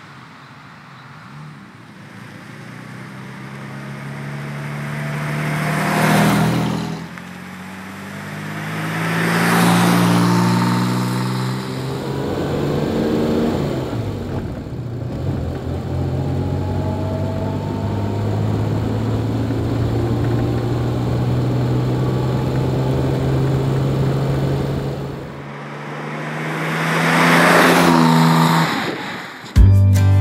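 1958 Jaguar XK150 roadster's straight-six engine. The car drives past twice early on, the sound swelling and falling away in pitch each time. It then runs at a steady cruise and passes once more near the end.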